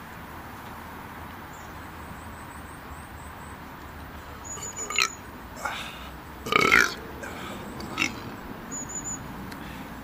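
A man's throaty vocal sounds, belch-like, in the second half: a few short ones, then a longer, louder one with a bending pitch a little past the middle, and a last short one after it.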